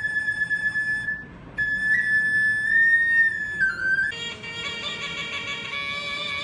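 Solo flute playing high, held notes that step up and down, with a short break about a second in. About four seconds in it gives way to a different wind instrument with a lower, fuller sound.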